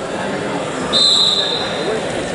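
Voices and chatter from a gym crowd, with one steady, high-pitched whistle blast of about a second starting about a second in.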